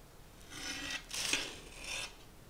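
Metal cake server scraping across a ceramic plate as it is drawn out from under a slice of cake: three scraping strokes starting about half a second in, the middle one loudest.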